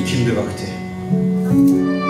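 Live Turkish folk ensemble playing: a bağlama plucked along with violin and keyboard. The music thins out about half a second in, and a new held chord comes in about a second in.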